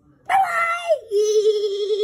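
A child's high-pitched scream in two parts: a first cry starting about a quarter second in that slides downward, then after a brief break a long, steady held scream with a slight wobble.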